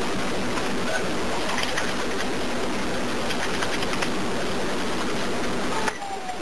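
Steady hiss and background noise of a recorded 911 phone line with nobody speaking, with a few faint clicks. The level drops suddenly just before the end.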